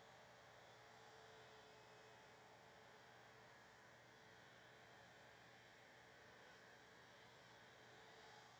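Near silence: faint room tone with a light steady hiss.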